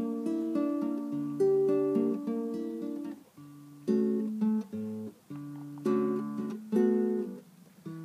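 Acoustic guitar playing a slow lullaby accompaniment, fingerpicked chords that each ring out and fade before the next, a new chord about every second or two.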